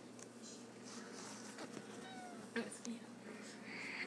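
A domestic cat giving a short, faint meow about halfway through, followed by a couple of soft knocks and rustling as it plays.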